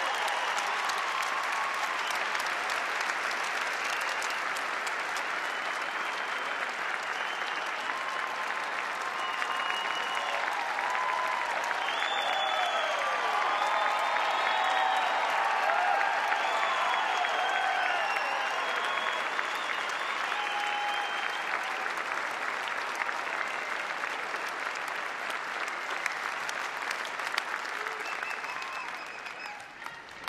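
Large crowd in an arena applauding steadily, with scattered shouts and whoops over the clapping through the middle, the applause fading out near the end.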